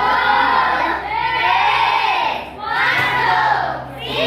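A group of children shouting and cheering together in repeated phrases of about a second each, with a short break between phrases roughly every second and a half.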